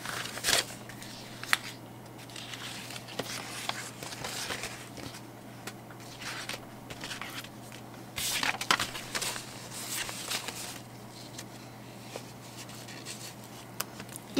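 Paper sticker sheets rustling and crinkling in irregular bursts as they are handled and leafed through.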